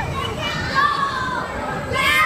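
Riders on a children's roller coaster shouting and screaming, with high-pitched voices rising and falling over the steady noise of the moving train.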